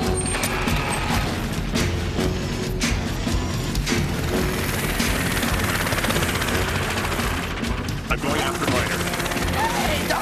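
Action-cartoon soundtrack: music under a dense, continuous wash of noisy sound effects, with a few sharp cracks in the first three seconds. Short vocal sounds come in near the end.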